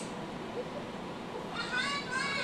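A cat meowing, played through a laptop's speaker: one drawn-out, high-pitched call starting about three-quarters of the way in, after a stretch of faint room hiss.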